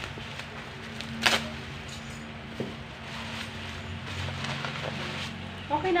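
Plastic packaging being handled and rustled, with one sharp crinkle a little over a second in and a smaller one about halfway through, over a steady low hum.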